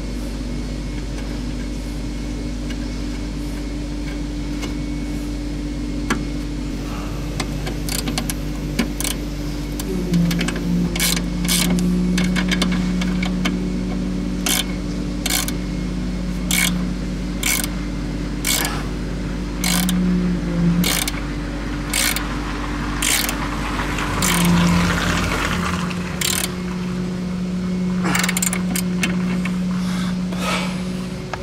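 Hand ratchet wrench clicking in short strokes as a nut on the car's front suspension is tightened, about one click a second from about eight seconds in. A steady low hum runs underneath.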